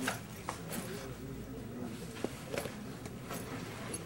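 Low, indistinct murmur of voices in a room, with a few sharp clicks and knocks scattered through it.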